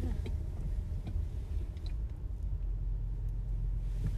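Steady low rumble of a car being driven, heard from inside the cabin, with a few faint clicks.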